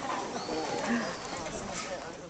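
Crowd chatter: several people talking over one another.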